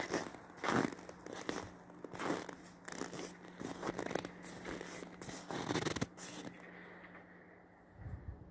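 Irregular crunching steps on packed snow, ending about six and a half seconds in.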